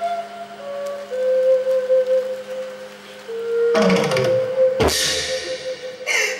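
Likay theatre accompaniment music: a held melody line over a steady low drone, then drums and cymbals come in about four seconds in, with one loud crash just before five seconds.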